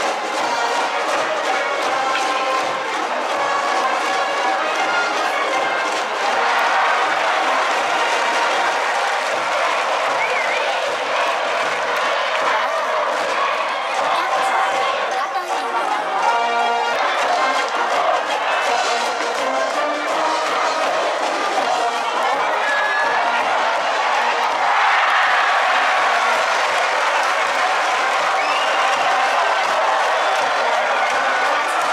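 School brass band in the stadium stands playing a cheering song, with trumpets and trombones, over the noise of a cheering crowd.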